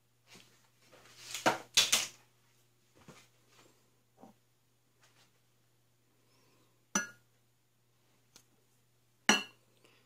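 Small glass prep bowls clinking and knocking as they are handled and set down: a short cluster of clinks about a second and a half in, then single sharp clinks near the seven-second mark and just before the end.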